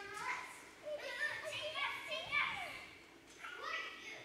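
A young child speaking lines on stage in several short phrases, the pitch rising and falling.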